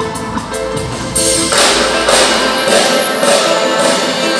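Live band music: a saxophone plays a melody over the drums, and about a second and a half in the sound grows louder and brighter with a wash of cymbal-like noise.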